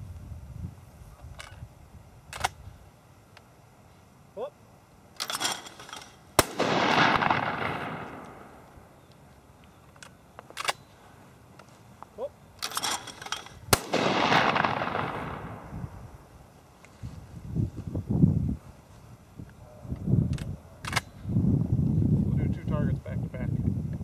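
Two shotgun shots at thrown clay targets, about seven seconds apart, each a sharp crack with a long echoing tail that fades over two to three seconds. Each shot comes just after a short rush of sound.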